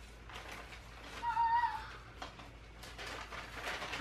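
A pet's brief high-pitched cry about a second and a half in, over the rustle of a paper gift bag being handled.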